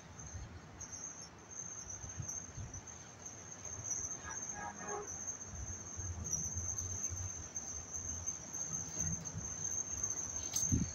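A steady high-pitched insect trill runs throughout, with soft low thumps and rumbles underneath.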